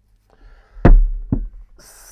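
Two knocks of hard objects set down on a tabletop: a loud one with a dull thud about a second in, then a smaller one half a second later.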